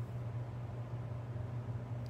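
A steady low hum with faint room noise, with no distinct event standing out.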